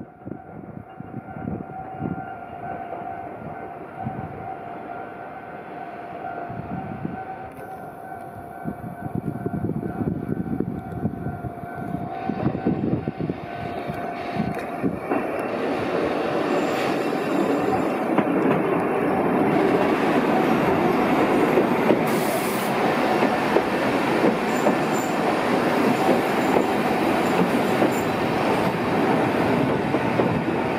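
A Sangi Railway 270 series narrow-gauge electric train approaches slowly and rolls past, growing steadily louder. A steady high squeal runs through about the first half. Wheels click over the rail joints, and the running noise of the cars fills the second half as they pass close by.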